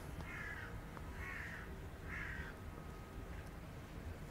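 Three short bird calls, about a second apart, over a faint outdoor background.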